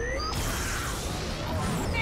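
Cartoon spaceship engines firing up: a brief rising whine, then a steady rushing noise over a low hum from about a third of a second in.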